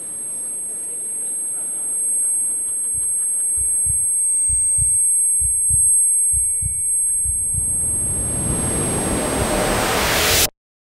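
Film sound-design effect: a steady, high-pitched ringing tone. From about three seconds in it is joined by deep low thuds that come in pairs about once a second. Near the end a loud rush of noise swells up.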